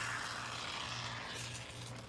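Aerosol can of polyurethane injection foam hissing as foam is sprayed out, the hiss trailing off near the end.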